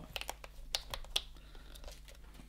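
Fingernails picking and scratching at a small cardboard advent calendar door: a quick run of light clicks and scrapes through the first second or so, thinning out after.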